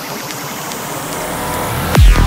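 Psytrance build-up between tracks: a swelling electronic noise sweep with a low synth tone rising in pitch over the last second, growing steadily louder into the next track's kick drum and bass.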